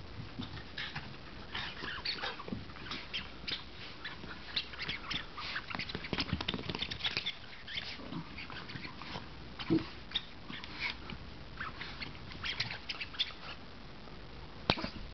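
Small white terrier mouthing and chewing a red rubber toy, making irregular short rubbery clicks and snaps that come in quick clusters, busiest in the middle of the stretch.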